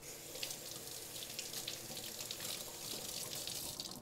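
Kitchen tap running in a steady stream into the sink, then shut off at the end.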